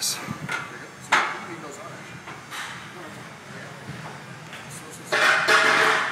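Forceful, breathy exhalations of a man straining through heavy leg-press repetitions: a sudden one about a second in and a longer, louder one about five seconds in, with a short knock at the very start.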